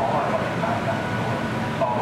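Steady rumble of a passenger train rolling slowly through a station, with people talking over it.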